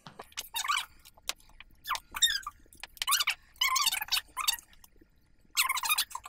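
A quick, irregular series of short high-pitched squeaks, about eight in all, with brief silences between them.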